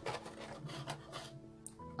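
Plastic packaging rustling and scraping in short strokes as small figure parts are handled, over faint background music.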